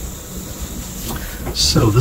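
A deck of tarot cards being gathered up from a fanned spread on the table: soft sliding and rustling of the card stock over a steady low background noise, ending in a short crisp snap as the deck is squared. A man's voice starts just before the end.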